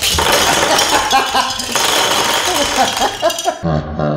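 Plastic Jenga Quake blocks falling and clattering onto a wooden table as the tower collapses, a dense run of clicks and knocks, with shouts and laughter over it.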